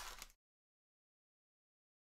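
Digital silence: after a brief trailing sound in the first instant, the audio cuts out completely.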